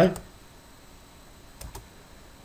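Two quick, sharp computer clicks close together, made while the web address in the browser is being selected to copy it, over faint room noise.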